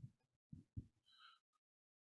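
Near silence, broken just past half a second in by two soft, low thumps about a quarter second apart: handling bumps on a handheld microphone.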